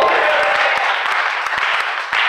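Congregation applauding, a dense spread of many hands clapping.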